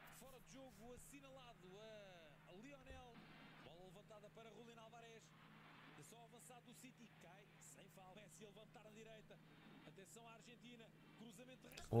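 Faint speech, a voice talking quietly in short phrases, over a low steady hum.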